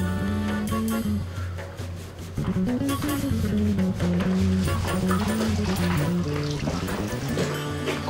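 Background music: a slow melody of held notes moving step by step over a steady low bass note.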